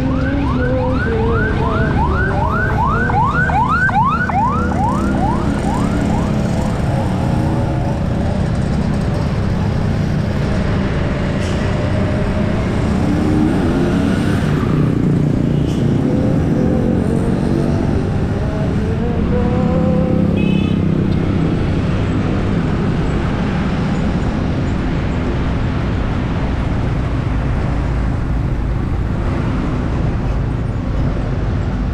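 Motorcycle riding in road traffic: a steady engine and wind rumble, with engine pitch rising and falling now and then. For the first several seconds a siren yelps rapidly over it, about three or four rising sweeps a second.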